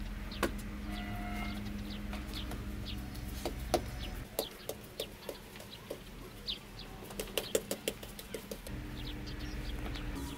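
Hens clucking in a quick run of short notes, with small birds chirping high and brief now and then. A low steady hum underneath drops away about four seconds in and comes back near the end.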